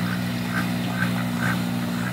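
Steady low motor hum with a few faint, short duck calls about every half second.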